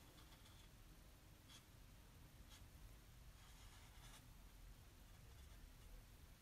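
Near silence with a few faint strokes of a chalk marker tip on a chalkboard sign, spaced about a second apart.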